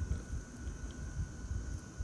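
Gusty wind on the microphone, with a faint steady high whine underneath.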